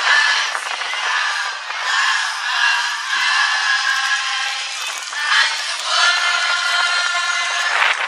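Children's choir singing together, holding long notes.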